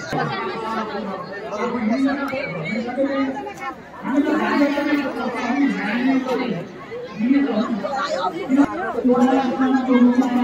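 People chattering: several voices talking back and forth with no break.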